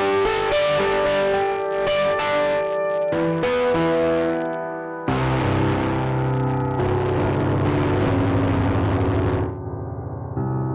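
A plucked-sounding melodic instrument line played through iZotope Trash Lite's digital distortion. About halfway through it turns thicker and noisier with more bass, and near the end the treble drops away, leaving a duller tone as the distortion settings change.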